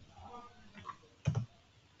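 A single sharp click from the computer's controls about a second and a quarter in, with a fainter tick just before it, over quiet room tone.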